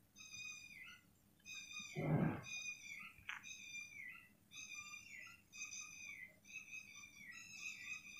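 Faint, high-pitched mewing of a kitten, repeated about ten short calls in a row, each dipping slightly at its end. A dull thud about two seconds in.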